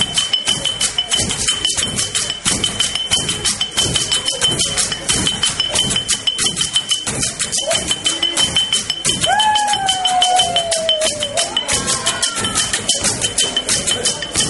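Live traditional drumming on tall standing drums: a fast, dense, driving rhythm with a high rattle over it. About two-thirds of the way through, a single long call slides slowly downward over the drums.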